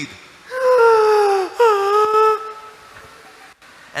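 A man's voice giving two long, drawn-out wailing cries back to back, each sliding slightly down in pitch, acting out a half-drowned prisoner struggling for breath.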